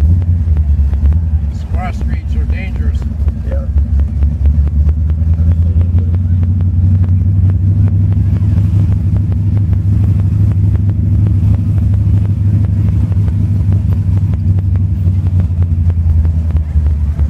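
1967 Oldsmobile convertible's engine running steadily at low cruising speed, heard from inside the open car; a brief voice comes in about two seconds in.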